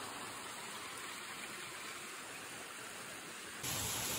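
Quiet, steady outdoor background hiss in woodland, with no distinct sounds in it. Near the end it switches abruptly to a slightly louder steady hiss.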